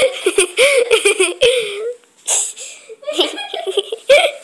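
A child laughing hard in high-pitched bursts of giggles, with a short breathy gasp about halfway through, in reaction to a tumble down the stairs.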